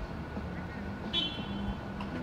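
Street traffic ambience: a steady low rumble, with a brief high-pitched tone a little over a second in.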